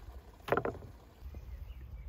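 A cleaver chopping minced meat on a wooden stump block: about three quick knocks close together, half a second in. A low rumble follows.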